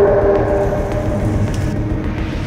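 Low, steady rumbling drone in the film's soundtrack, with two held horn-like tones in the first second that fade out.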